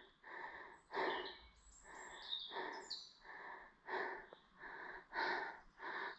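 A hiker breathing hard after a steep uphill climb, quick, even breaths at about one and a half a second.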